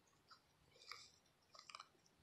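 Faint crumbly scrapes of peat-and-compost potting soil under fingers pressing a tulip bulb into its planting hole: a few short rustles around a second in and a small cluster near the end.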